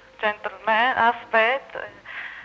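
A woman's voice in about four short, loud phrases, high and wavering in pitch.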